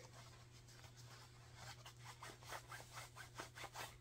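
Fingers rubbing the puffy nylon upper of a slide sandal, which rustles faintly like raincoat fabric. The rustle comes in quick repeated strokes that begin about a second and a half in and grow louder toward the end.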